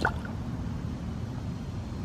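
A largemouth bass splashing into pond water as it is released by hand: one brief splash right at the start, then steady low background noise.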